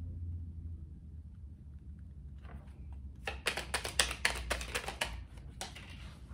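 A deck of tarot cards being shuffled by hand: a quick run of crisp card clicks lasting about two seconds, starting about three seconds in, over a low steady room hum.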